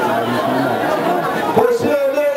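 A man's voice preaching into a microphone, with crowd chatter beneath.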